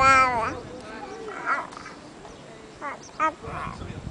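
A baby vocalising on a swing: a long, high 'aah' that ends about half a second in, followed by short squeals and babbling sounds.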